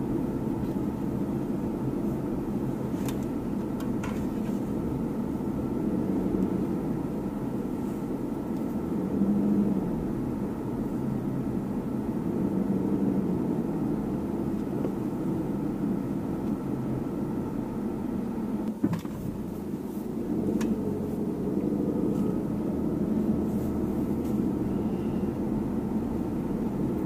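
A car being driven slowly, heard from inside the cabin: a steady low rumble of engine and tyres on the road, with one brief click about three quarters of the way through.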